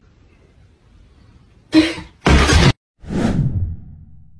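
Edited-in sound effects: two short, hard noisy hits a little under two seconds in, then a whoosh that fades out.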